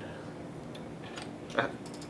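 A few faint, short clicks of handling over quiet room noise as a plastic disposable razor is picked up off a wooden table.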